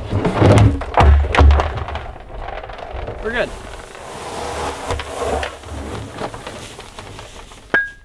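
Low rumbling thuds and knocks, loudest in the first two seconds, as a plastic barrel is handled, with wind buffeting the microphone. Near the end a post driver strikes a stake once with a sharp metal clang that rings briefly.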